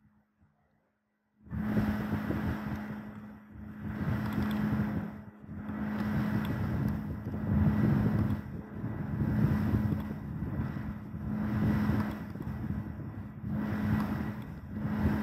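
Loud rumbling noise that starts suddenly about a second and a half in, then swells and fades every second or two over a steady low hum.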